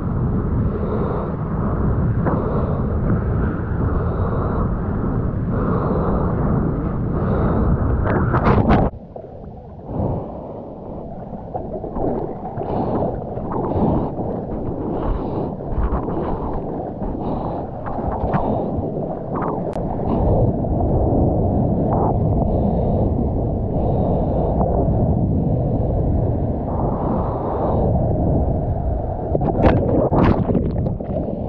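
Rushing water and wind rumble on a surfer's waterproof action camera at board level. It drops off suddenly about nine seconds in, and then comes a run of arm-paddling splashes, a bit more than one stroke a second, with a loud splash near the end.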